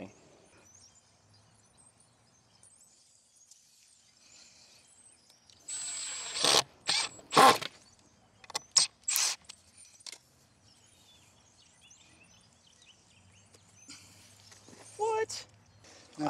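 Cordless drill driving a screw into a wooden stake in several short bursts about six seconds in: one longer run with a high whine, then a few quick blips as the screw is set.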